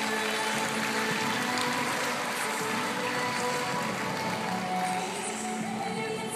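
Music playing over the sound system of a large indoor arena.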